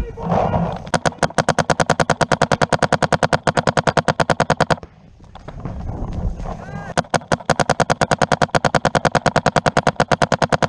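Paintball marker firing two long streams of rapid, evenly spaced shots, each about four seconds long, with a short break in the middle. A voice is heard in the break.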